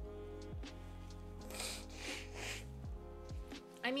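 Nimble nail-painting robot calibrating: its motors run in steady tones that step up and down in pitch, with a few falling glides and a short whirring hiss about a second and a half in, like an old document scanner at work.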